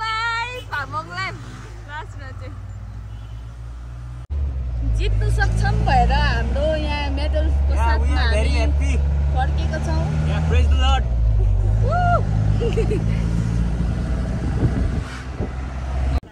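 A utility jeep's engine idling under people's voices; about four seconds in it changes to the engine running much louder from inside the cabin, a steady low rumble under several passengers talking.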